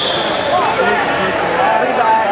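Overlapping voices of a crowd of spectators, many people shouting and talking at once.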